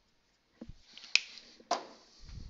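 Marker on a whiteboard: short scratchy writing strokes and two sharp clicks about half a second apart.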